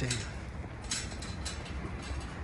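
Empty steel hand truck rolling across concrete: a steady low rumble from its wheels, with a few light clicks and rattles from the frame.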